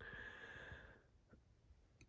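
Near silence inside a car cabin, with a faint soft hiss for about the first second.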